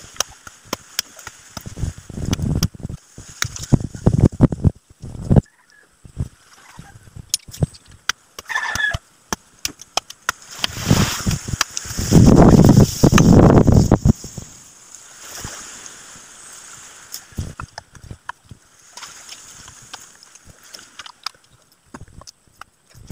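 Wet mud squelching and sloshing as a hand tool is worked into the waterlogged bottom of a dug foundation pit, in irregular bursts mixed with scattered knocks and scrapes. The longest and loudest stretch of sloshing comes a little past halfway.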